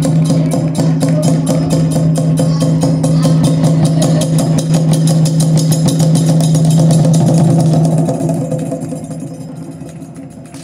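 Kagura festival music from a percussion ensemble led by a taiko drum: a rapid, even beat of sharp strikes over a steady, held low tone. It dies away from about eight seconds in.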